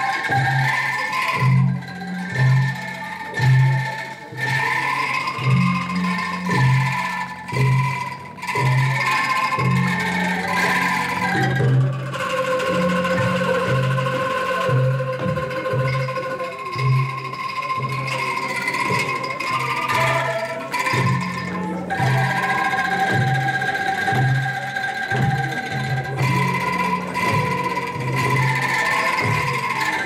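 Angklung ensemble playing a Greek tune in an Indonesian arrangement: rattling bamboo angklung carry the melody over a regular low beat from drums and gongs.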